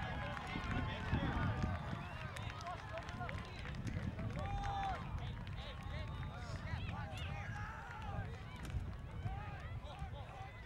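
Indistinct voices of many people calling and talking across a soccer field, none clear enough to make out, over a steady low rumble of wind on the microphone.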